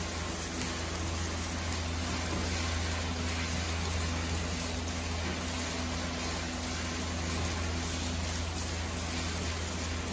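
Chopped chicken, garlic and onion frying in a nonstick pan, a steady sizzle as a wooden spoon stirs them, over a steady low hum.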